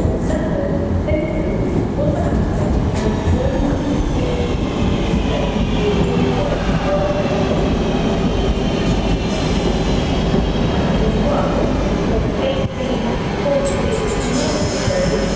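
Northern class 323 electric multiple unit running into the platform and slowing, with a steady rumble of wheels on rail and a motor whine that falls in pitch as the train brakes.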